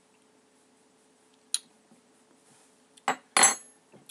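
Tableware being handled: one sharp click about a second and a half in, then two quick, loud clinks near the end with a brief ring.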